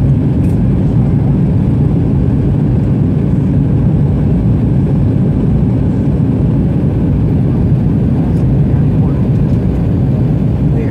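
Steady cabin noise inside an Airbus A319 during its descent: the low roar of airflow and the twin jet engines heard from a window seat over the wing.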